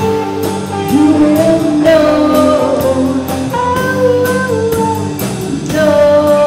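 Live rock band playing: electric guitars, bass, keyboard and drum kit under a singer's voice, with the drums keeping a steady beat of about two strokes a second. The recording levels are set too hot.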